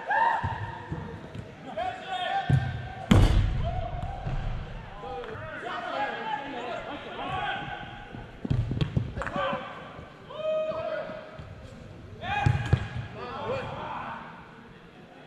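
Indoor soccer ball being kicked on artificial turf: a few sharp thuds, the loudest about three seconds in, with players shouting to each other in between.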